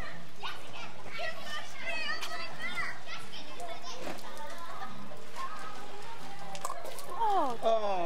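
Children shouting and calling out while playing, their voices high and unclear. One voice gives a louder, falling cry near the end.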